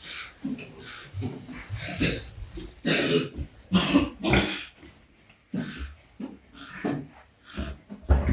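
Pigs grunting during mating, a boar mounted on a sow. The grunts come as a series of short, rough calls at uneven intervals, loudest around the middle and fainter toward the end.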